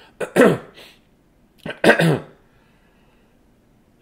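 A man clearing his throat twice, two short gruff sounds with a falling pitch, the second about two seconds in.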